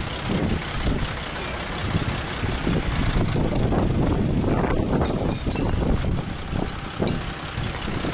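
Crane tow truck's engine running steadily under load, powering the crane as a car hanging in lifting straps is lowered to the ground. A few light clicks come about five seconds in.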